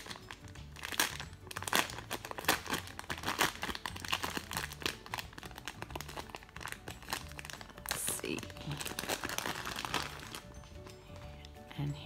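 Thin plastic toy packaging crinkling and crackling irregularly as it is opened and a squishy is pulled out of the bag.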